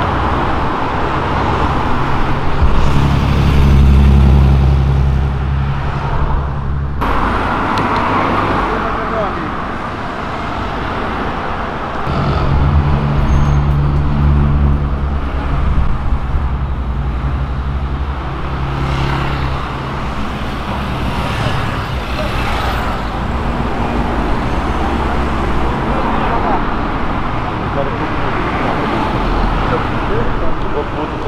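Street traffic with car engines driving past close by. A low engine note swells twice, about three to seven seconds in and again around twelve to sixteen seconds in, and the sound cuts off abruptly about seven seconds in.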